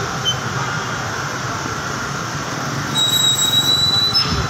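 Steady city street traffic noise, with a thin high-pitched squeal that comes in about three seconds in and lasts about a second.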